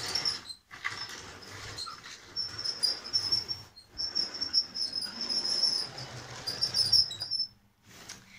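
Lego train being pushed by hand around plastic track, its wheels squeaking high and steadily with a low rattle from the rails. The squeak drops out twice briefly and fades near the end.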